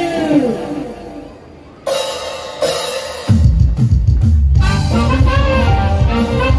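Live band music. A held note slides down in pitch and fades out. Cymbal crashes come about two seconds in, then the drums and bass come in loudly with a steady beat, and a melody line joins near the end.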